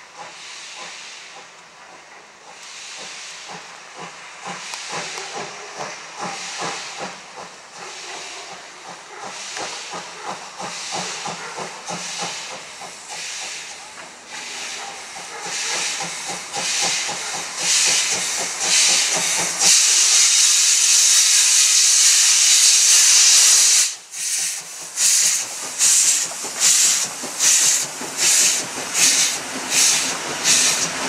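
DR class 52 2-10-0 steam locomotive 52 1360-8 working a train, its exhaust beating in a rhythmic chuff that grows louder as it approaches, with steam hissing around the cylinders. Past two-thirds of the way in, a loud steady hiss dominates for a few seconds and breaks off suddenly, then the chuffs return strong at a little more than one beat a second.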